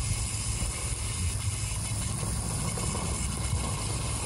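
Hose-end sprayer spraying a steady hissing jet of water mixed with worm compost tea, which it draws up from a bucket by suction, over a low steady rumble.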